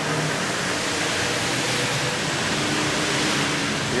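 A steady rushing noise, as loud as the speech around it, swelling in at the start and dropping away near the end.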